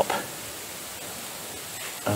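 Steady background hiss with no distinct events, between spoken instructions.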